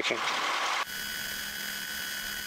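Small single-engine airplane's engine and cabin noise carried through the headset intercom. It cuts down sharply just under a second in as the intercom closes, leaving a quieter steady hiss with a faint high whine.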